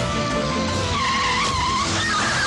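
A van's tyres squealing as it swerves hard, a wavering squeal through the second half, with the vehicle's engine under film score music.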